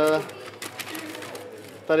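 A man's voice: a short hesitation sound at the start and the start of another word near the end, with only faint low background sound in the pause between.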